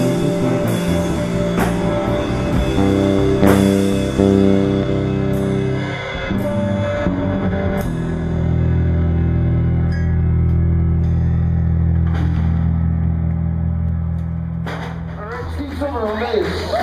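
A rock band of drums, bass guitar and electric guitar playing, with drum and cymbal hits over chords. About halfway through the drums stop and a low held bass chord rings on, fading out near the end as the song finishes.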